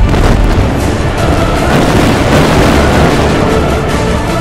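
Trailer music mixed with war-film battle noise: explosions and booms, dense and continuous, loud throughout.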